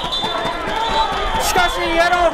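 Several people shouting and calling out at once, their voices overlapping, as a football play runs downfield. A single sharp knock or clap about one and a half seconds in.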